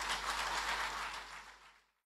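Audience applause, steady at first and then fading out near the end.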